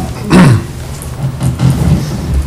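A man clearing his throat: a short, falling, grunt-like voice sound about half a second in. After it comes a steady low hum of room and sound-system noise.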